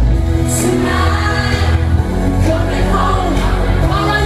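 Live pop-rock band: a male lead vocalist singing into a handheld microphone over drums and keyboards, with a heavy, steady bass.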